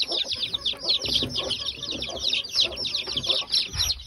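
A brood of domestic chicks peeping continuously: many overlapping high, falling peeps, several a second.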